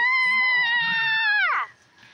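A child's long, high-pitched squeal. It rises at the start, holds one steady pitch for about a second and a half, then drops away.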